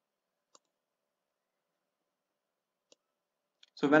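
Two faint computer mouse clicks about two and a half seconds apart, with near silence between them.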